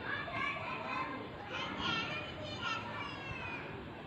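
Several children's voices talking and calling out over one another, high-pitched and overlapping.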